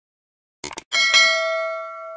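Subscribe-button animation sound effect: a quick pair of clicks, then a bright bell ding that rings on and slowly fades.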